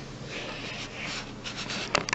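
Faint rubbing and rustling over a low steady hum in a small room, with a sharp click near the end.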